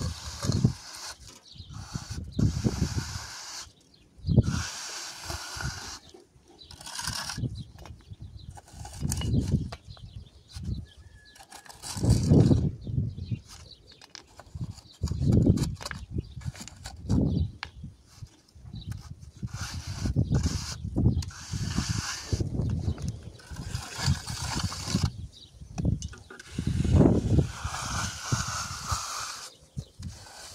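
Steel trowel scraping and smoothing wet cement mortar along the top of a row of concrete blocks, in repeated rough strokes roughly every two seconds.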